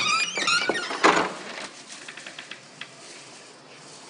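A door being unlocked and opened: a squeak near the start, a sharper knock about a second in, then a few faint clicks.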